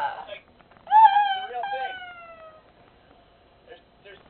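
A girl's high-pitched, drawn-out whine that starts about a second in and slowly falls in pitch before fading.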